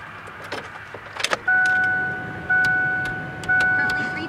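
Ford Ranger's warning chime sounding in the cab, a steady two-note tone that restarts about once a second and fades between starts, beginning about a second and a half in after a few faint clicks.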